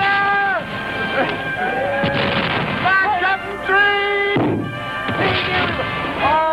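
Cannon-fire sound effects: three rough blasts, the first longer, about two, four and a half and five seconds in, over held pitched music notes.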